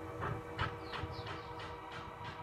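Soft background music with sustained held tones, over which a run of quick, high falling chirps repeats several times a second.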